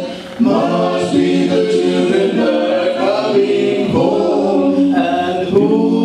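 A vocal quartet singing unaccompanied, several voices holding notes together in harmony, with a brief break just after the start.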